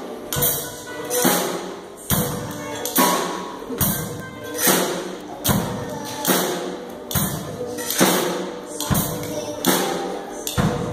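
Live children's band playing: a drum kit keeps a steady beat, a strong hit a little less than once a second, under keyboard and a child's voice at the microphone.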